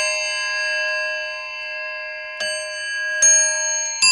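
Bell-like chime tones, each struck and left to ring on for a second or more, with new strikes about two and a half and about three seconds in.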